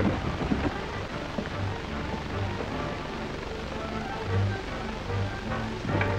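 Low, slow film-score music, with deep notes recurring every second or so, under the steady hiss of an old optical film soundtrack.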